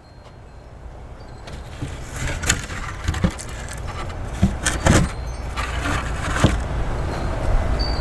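Wind gusting on the microphone, building steadily in strength, with several sharp metallic jingles and clinks through it.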